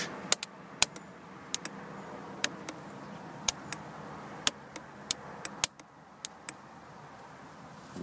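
A metal jumper clamp tapped on and off a battery terminal, making about sixteen sharp, irregular clicks over six seconds. Each tap briefly connects a 24-volt series battery pair to charge a bank of ultracapacitors.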